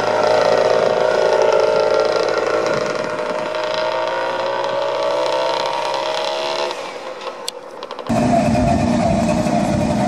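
A Goggomobil's small air-cooled two-stroke twin running as the car drives off; its pitch drops slightly and it fades away. About eight seconds in, it cuts abruptly to another Goggomobil's engine running close up, louder and deeper.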